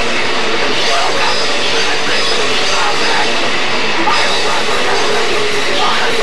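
Loud live rock band playing: electric guitars and a drum kit, full and steady throughout.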